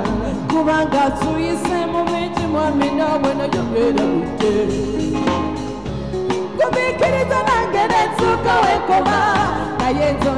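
A live band plays a pop song while a woman sings lead into a microphone, over a steady drum beat.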